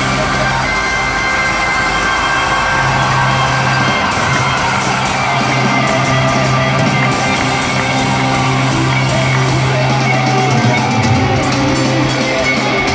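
Heavy metal band playing live, heard loud through the arena PA: distorted electric guitars, bass and drums, with the singer's vocals.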